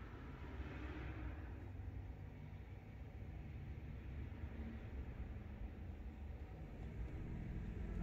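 Faint, steady low rumble and hum of room background noise.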